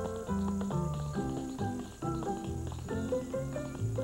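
Dance-band music with the crisp taps of tap shoes on a stage floor over it. A faint steady high-pitched whine from the tape recording runs underneath.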